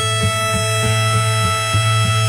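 Instrumental break in a live folk-rock song: a harmonica holds one long reedy chord over acoustic guitar strummed about four times a second.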